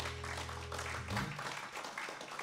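Audience applauding as the last chord of an acoustic guitar and banjo rings out, the low notes stopping about a second in.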